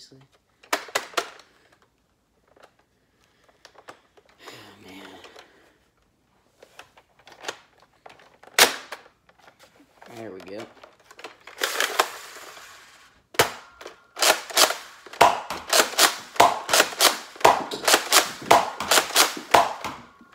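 Nerf Rival Hades spring-powered pump-action blaster: scattered clicks of handling and a single sharp shot about nine seconds in, then from about thirteen seconds a fast run of pump-and-fire clacks, two or three a second, as it is slam-fired by holding the trigger and pumping.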